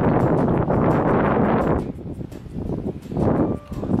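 Wind buffeting a handheld camera's microphone: a loud rushing rumble that starts suddenly and lasts about two seconds, then eases, with a shorter gust about three seconds in.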